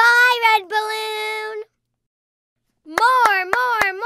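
Cartoon baby's sing-song vocalizing: a held note lasting about a second and a half, then a sudden silence, then a wavering rising-and-falling vocal line with a few sharp hand claps in the last second.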